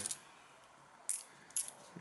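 UK one-penny coins clinking together as they are handled in a hand: two short, light metallic clinks, about a second in and half a second later.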